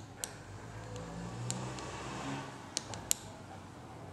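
A few faint, sharp clicks of small glassware being handled, a glass rod against a reagent bottle and slide, over quiet room noise: one just after the start and two close together about three seconds in.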